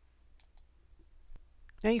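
A few faint clicks of a computer mouse, spread through a quiet pause.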